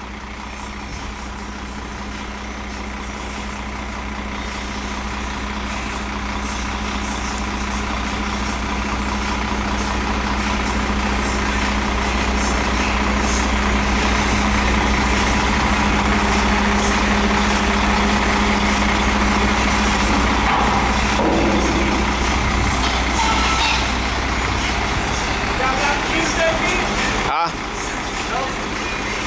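Mercedes-Benz diesel engine of a 2007 Freightliner M2 roll-off garbage truck running steadily while the truck's Galbreath hoist is raised hydraulically. The sound grows louder over the first dozen seconds, holds, then drops briefly just before the end.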